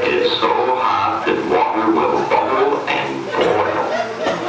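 Indistinct speech with music underneath.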